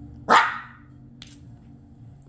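A Maltese puppy gives one short bark, the loudest sound here, followed about a second later by a brief high click.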